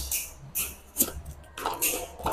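Small cardboard box being handled and opened by hand: a few short scrapes and rustles of cardboard.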